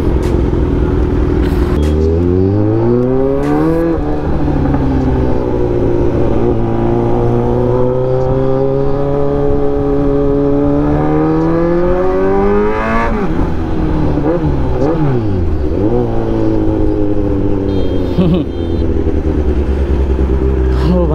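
Kawasaki Z900's inline-four engine under way. It holds a low steady note, then pulls with the pitch climbing from about two seconds in, with a brief dip near four seconds. It keeps rising until around thirteen seconds, drops off sharply as the throttle closes, rises and falls a few times, and settles back to a steady low note.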